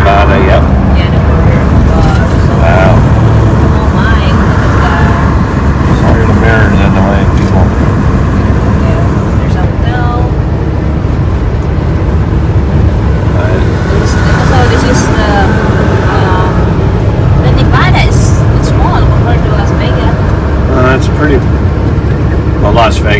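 Steady low rumble of a semi truck's diesel engine and tyres, heard inside the cab while it drives down the highway.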